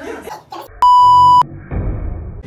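A single electronic beep, one steady pure tone about half a second long that cuts in and out abruptly: an edited-in bleep of the kind used to censor a spoken word.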